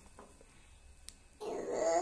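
A young child's wordless vocal sound, a drawn-out grunt that rises a little in pitch, starting about halfway through after a near-quiet stretch with one faint click.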